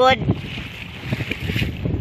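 Strong wind buffeting the microphone on a sailboat under sail, an uneven low rumble with a steady hiss above it.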